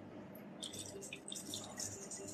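Faint water splashing and dripping as it is poured from a plastic bottle over a face, in irregular spatters starting about half a second in.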